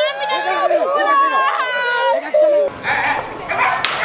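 Several women's voices crying out in wavering, drawn-out wails. About two and a half seconds in they cut off abruptly, giving way to an even outdoor hiss with one sharp click near the end.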